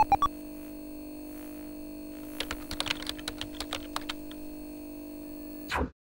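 Computer keyboard typing, a quick irregular run of keystrokes over a steady electronic hum, with a couple of short electronic beeps at the very start; the hum cuts off suddenly near the end.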